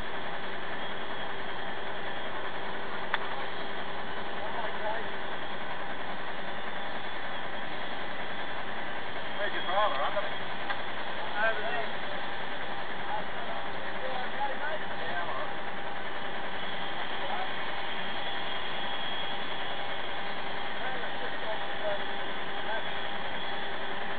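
A steady, unchanging mechanical hum with faint voices outside, most noticeable about ten seconds in.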